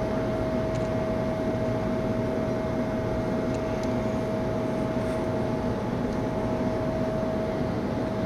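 Steady mechanical hum over a noisy rush, with one constant high whine held at a single pitch throughout.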